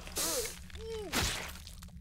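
A man's choked gasps and groans, voiced for a dying cartoon astronaut: three short wavering cries, with a harsh noisy burst a little past a second in.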